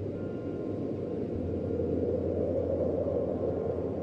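Wind-like rushing noise, deep and swelling slightly, over a steady low drone, opening an ambient electronic track.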